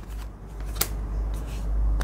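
A deck of illustrated cards being shuffled by hand: a soft rustle of card stock with a couple of crisp clicks, the first a little under a second in, over a low rumble.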